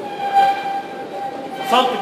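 Whiteboard marker squeaking on the board as it writes: one steady, high squeal lasting about a second and a half, followed by a man's voice near the end.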